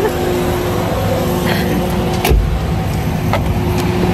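A car engine idling with a steady low hum, a brief laugh over it, and a single thump a little over two seconds in.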